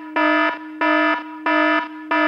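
Electronic alarm-like beeping: three even pulses of a low buzzing tone, about one and a half a second, with the tone held more quietly between them.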